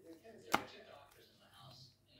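A sharp plastic click about half a second in as the cassette compartment door of a Sony TCM-6DX cassette-corder is snapped shut, amid faint handling noise.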